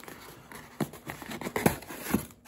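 White cardboard mailer box being handled and opened by hand: a handful of short taps and scrapes of cardboard, mostly in the second half.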